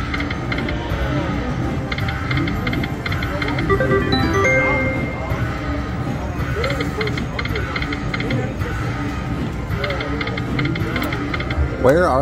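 Ainsworth 'Temple Riches' video slot machine spinning its reels on losing spins, with runs of rapid spin ticks and a short run of stepped chime tones about four seconds in. A steady casino background of voices and music lies under it.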